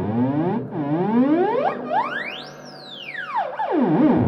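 Ondes Martenot played with the ring slid along the wire, making smooth gliding slides in pitch: low swoops rising and falling, then one long sweep up to a very high note about halfway through and back down again.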